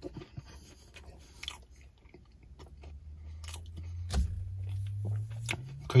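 Close-up chewing of a mouthful of fried chicken sandwich, with small crunchy clicks scattered throughout. A low steady hum builds up in the background from about halfway, and there is one stronger knock a little after four seconds in.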